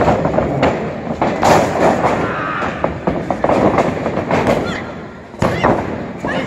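Bodies landing on a wrestling ring's mat with heavy thuds, once about a second and a half in and again near the end, amid spectators' shouts.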